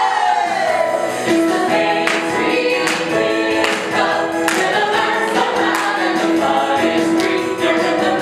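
Cast of a children's stage musical singing a song together over instrumental accompaniment with a steady beat.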